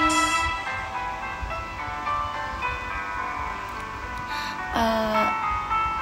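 Instrumental backing track playing the closing bars of a pop ballad, with sustained notes changing every half second or so, after the singer's last held note ends just at the start. A brief spoken 'à' comes near the end.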